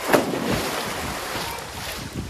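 A person diving headfirst into a swimming pool: one sharp splash on entry, then the disturbed water washing and sloshing, slowly dying down.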